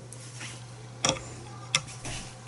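Two short sharp clicks about two-thirds of a second apart, over a low steady hum, as hands work at a trouser waistband.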